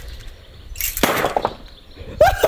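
A homemade pole weapon with a metal spiked tip striking a brick once: a single sharp hit about a second in, with a short ring after it.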